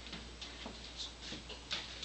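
Faint, scattered clicks and light knocks of an acoustic guitar being picked up and handled.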